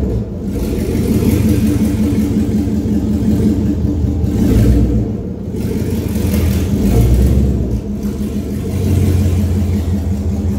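Chevrolet C10 pickup's engine running with a low exhaust note, rising and falling several times as it is given gas while the truck maneuvers.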